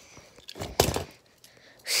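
A brief scuffing rustle about half a second in, from the phone being moved over the carpet and toy packaging; a word of speech begins at the very end.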